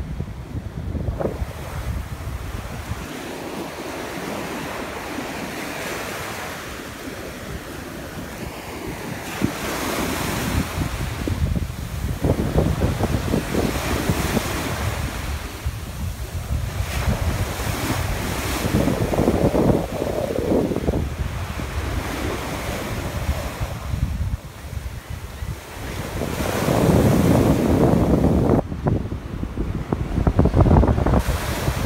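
Ocean surf breaking and washing up the sand in repeated swells, with wind buffeting the microphone. The surf grows loudest near the end, close to the water's edge, as foam washes in.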